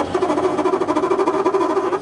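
Car engine running steadily while climbing a hill, a constant droning note with a rapid, even flutter, heard from inside the cabin.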